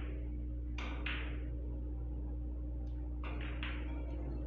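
Carom billiard shot: a cue tip strikes the ball at the start, then the balls click sharply against each other once about a second in and three times in quick succession near the end, over a steady low hum.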